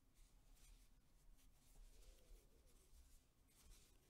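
Near silence, with a faint, soft rustling about twice a second as a crochet hook draws cotton yarn through single-crochet stitches.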